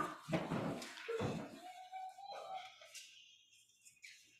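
Shuffling and knocks of people sitting down in wooden church pews, with a drawn-out squeak about two seconds in.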